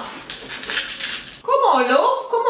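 A crunchy bite into a crisp snack, a noisy crackling crunch lasting about a second, followed by a woman starting to speak.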